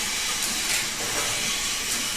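Syrup bottle filling line running: the rotary bottle turntable and conveyor give a steady hiss of machine noise, with a few light knocks of bottles jostling against each other.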